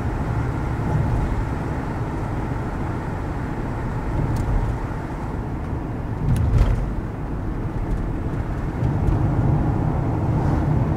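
Steady road noise of a car being driven on a city street: tyre and engine noise, strongest in the low end. It swells briefly about six and a half seconds in, with a couple of faint clicks.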